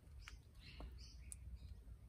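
Near silence with a few faint, short bird chirps in the background.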